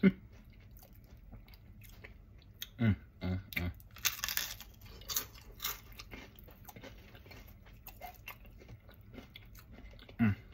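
A person chewing a crispy fried crab rangoon, with scattered crunches and mouth sounds, a sharp crack right at the start and a louder crunchy burst about four seconds in.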